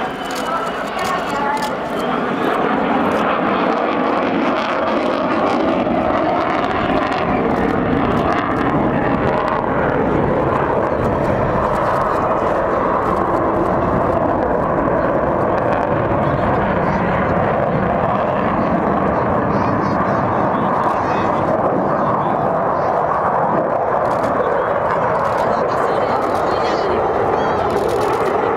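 Fighter jet flying a display pass overhead, its jet engine noise loud and steady, swelling about two seconds in.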